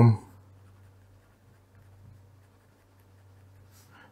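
Faint scratching of a pen writing on paper, in small irregular strokes, over a low steady hum.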